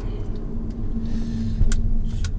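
Cabin noise of a Honda Odyssey (RB3) with its 2.4-litre four-cylinder engine driving slowly: a steady low rumble of engine and road, with a sharp click about a second and a half in.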